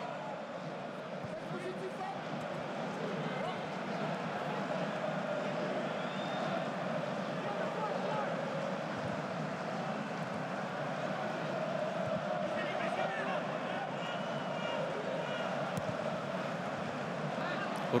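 Broadcast pitch sound from an empty football stadium: a steady background hum with faint, drawn-out calls from players on the pitch.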